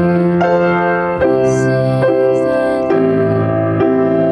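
Grand piano played with both hands: right-hand chords in different inversions over octaves in the left hand. The chords are held and change about once a second.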